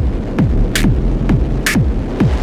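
Electronic dance music played on analog hardware synths and drum machines. A kick drum drops in pitch about twice a second, with a noisy snare or clap on every other beat, over a steady low bass drone.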